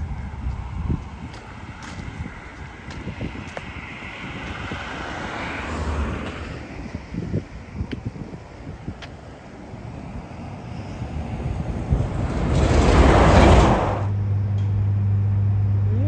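Road traffic: cars going by on the road, with one passing close and loud near the end. Just after it, a steady low hum sets in.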